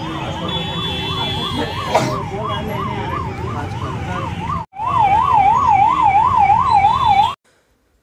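Emergency vehicle siren wailing in a fast up-and-down warble, about two and a half cycles a second, over road traffic noise. It drops out briefly just before five seconds in, comes back louder, and stops abruptly about seven seconds in.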